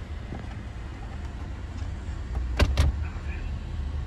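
Car running at low speed, a steady low rumble, with two sharp clicks close together about two and a half seconds in.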